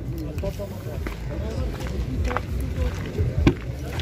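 Indistinct background voices over a steady low rumble, with a few short clicks and knocks from handling the car body. The sharpest click comes about three and a half seconds in, as a rear door is opened.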